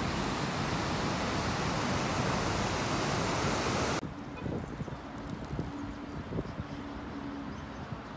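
Water rushing steadily over a low river weir, a loud even roar of white water. About halfway it cuts abruptly to a much quieter outdoor background with a faint steady hum of distant traffic.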